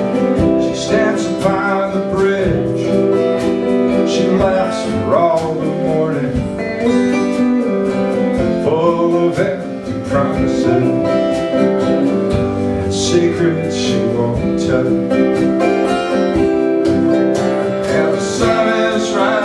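Live band playing a song: strummed acoustic guitar with electric lead guitar and drums, with cymbals struck now and then.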